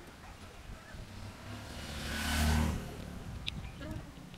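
A car passing on the road, its tyre and engine noise swelling to a peak about two and a half seconds in and then fading away.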